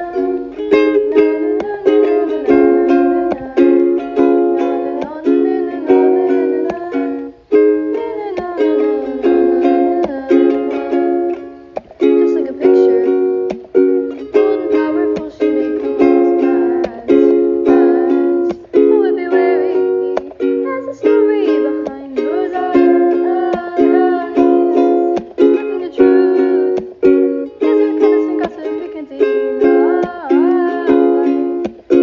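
Strummed ukulele chords in a steady, even rhythm, carrying an instrumental stretch of a song.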